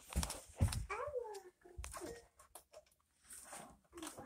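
Bumps and knocks from a handheld phone being swung about, with a short rising-then-falling voice-like call about a second in.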